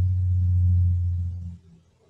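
A steady low hum that fades out near the end.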